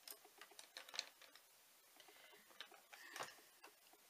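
Near silence with faint clicks and light taps of makeup palettes and brushes being handled, a sharper click about a second in and a short cluster near three seconds. A faint, even ticking runs underneath.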